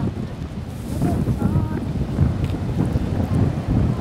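Wind buffeting the microphone, heard as a steady gusting low rumble, over the wash of ocean surf.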